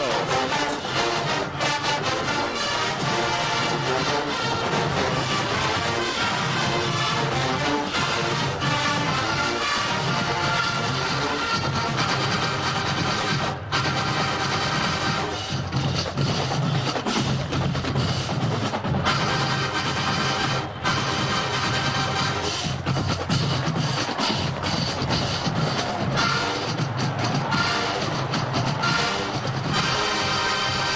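College marching band playing its halftime show: a full band, with the drums keeping a steady beat under the rest of the band throughout.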